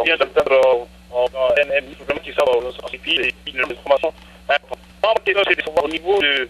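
Only speech: a voice talking over a telephone line, thin and cut off in the highs, with a steady low hum underneath.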